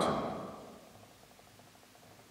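A man's voice dying away in the church's reverberation over about a second, then near silence: room tone.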